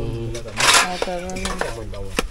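A metal spoon scraping and clinking in a metal cooking pot as thick banana stew is dished out, with the loudest scrape a little over half a second in and a couple of sharp clinks. Voices talk over it.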